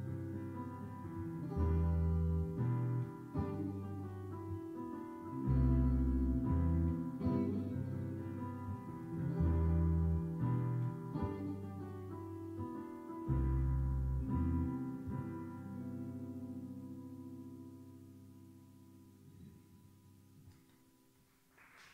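Live band playing an instrumental passage on Korg electric keyboard with a piano sound, electric guitar and electric bass, a phrase with a strong bass note repeating about every four seconds. In the last few seconds the final chord rings on and fades away, ending the song.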